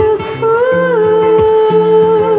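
A woman singing a long held note, rising slightly and then wavering with vibrato near the end, accompanied by strummed acoustic guitar chords.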